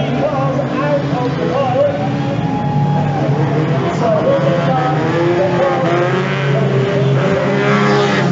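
Several banger racing cars' engines running and revving as they race on a dirt oval, their pitch rising and falling. Near the end a car passes close, adding a swell of engine and tyre noise.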